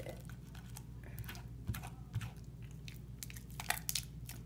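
Fingers squishing and pulling runny slime made with Suave Kids in a plastic bowl: irregular wet, sticky clicks and squelches, with a quick cluster near the end.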